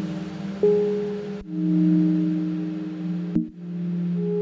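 Eurorack modular synthesizer playing sustained quartal chords with no drums: a new chord enters about half a second in, another about a second and a half in, and another near the end, each one slowly fading.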